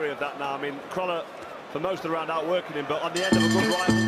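Speech from the fight broadcast, then music with plucked guitar notes starts a little after three seconds in.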